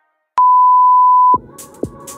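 Workout interval timer giving one long, steady beep of about a second, marking the end of a work interval and the start of the rest period. Music comes in just after it.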